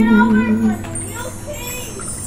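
A held final musical note fades out under the high, lilting voices of children at play, and faint high ringing tones come in about a second in.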